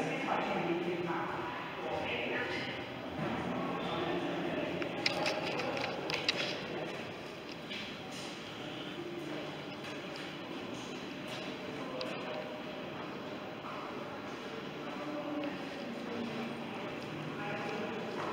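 Indistinct voices of people talking in a room, with a few sharp clicks about five to six seconds in.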